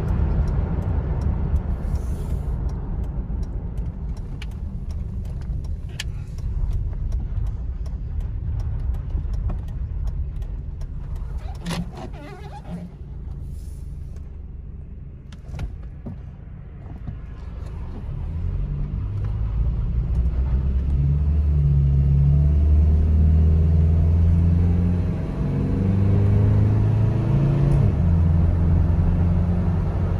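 2004 Toyota Tacoma's 2.7-litre four-cylinder engine and road noise heard from inside the cab. The truck cruises, eases off until it is nearly stopped around the middle, then accelerates hard with a rising, louder engine note and a brief dip near the end.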